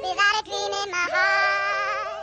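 High-pitched singing voices holding sung notes with a wavering vibrato, part of a film soundtrack. The singing breaks briefly about half a second in, then resumes with a new held note about a second in.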